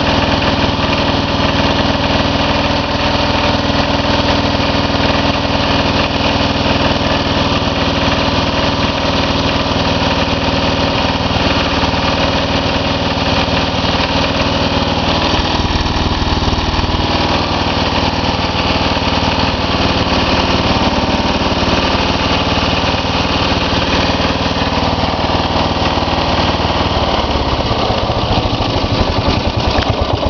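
11 hp Briggs & Stratton single-cylinder engine of a Simplicity 4211 garden tractor running at a steady speed, its pitch shifting near the end. The owner says its governor is still not adjusted right.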